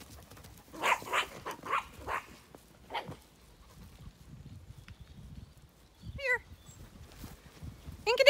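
A sheepdog barking: a quick run of about five sharp barks around a second in, another bark near three seconds, and one higher call at about six seconds.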